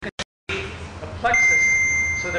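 A single steady high-pitched beep, one held tone lasting about a second, begins about a second in over a man's voice, after a brief dropout of the sound at the start.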